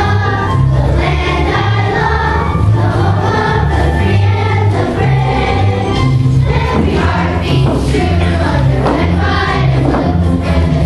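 Children's choir singing a patriotic song with instrumental accompaniment and a steady, pulsing bass line.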